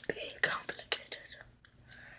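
Soft whispering mixed with a few sharp clicks from the plastic joints of a Transformers figure as it is folded during transformation.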